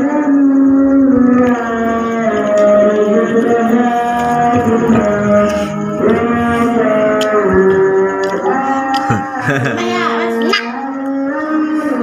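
Islamic praise chanting (pujian) sung in long held notes that slide from pitch to pitch over a steady low note.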